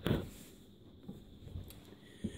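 A brief rustle of the camera being handled at the start, then quiet room tone with a couple of faint ticks.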